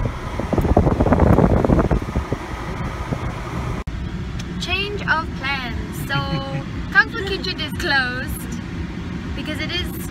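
Steady low rumble of a car driving, heard from inside the cabin, under a young woman's voice. A loud, rough burst of noise comes about half a second in and lasts over a second.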